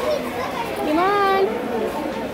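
Children's voices and chatter, with one child's high, drawn-out call about a second in that rises and then holds for about half a second.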